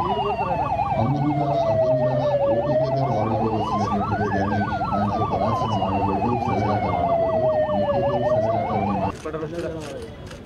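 Fire-service electronic siren sounding a slow wail that falls and rises twice, with a fast warble running at the same time. Both cut off abruptly about nine seconds in.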